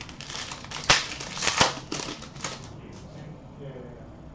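Hockey trading cards being flicked through by hand: a quick run of light clicks and snaps, with two sharper snaps about a second and a second and a half in.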